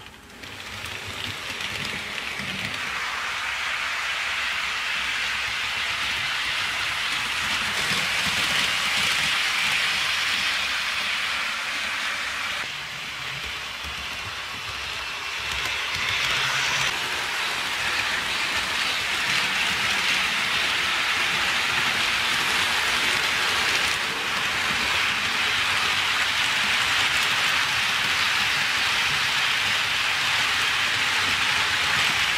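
HO scale model train rolling along sectional track: the small metal wheels on the rails and joints make a steady rushing clatter. It rises over the first two seconds, goes quieter for a few seconds a little before the middle, then holds steady.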